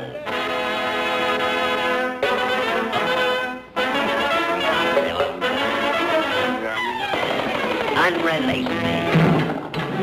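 Orchestral cartoon score led by brass, trumpets and trombones playing held chords, with a brief drop out about a third of the way in and sliding notes near the end.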